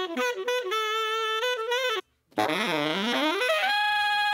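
Recorded saxophone track playing back while it is being equalised: a phrase of short notes and a held note, cutting off for a moment about two seconds in, then playing on.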